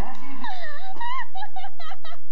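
A person's high-pitched wailing cry that slides down and back up in pitch, then breaks into a few short, quick warbling notes near the end.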